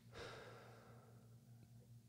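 Near silence: room tone with a low steady hum and one faint, brief sound just after the start.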